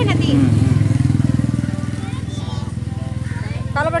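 An engine running steadily nearby, a low even hum that eases off slightly after about a second, with short bits of speech at the start and near the end.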